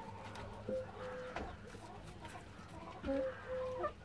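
German giant rabbit chewing a slice of apple with faint crunches. Over it, a bird calls in the background in short held notes, loudest about three seconds in.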